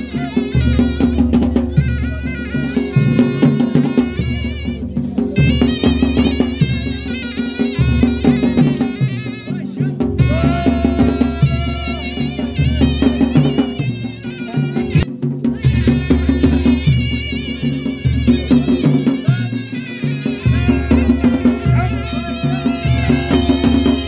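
Traditional Ladakhi folk dance music: a drum beat under a wavering melody, over a steady low drone, playing without a break.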